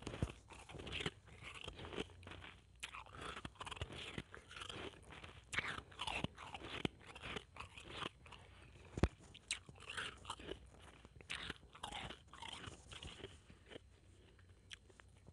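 Blended ice being chewed in the mouth, close to an earphone microphone: a dense, irregular run of crisp crunches, with one sharper crack about nine seconds in.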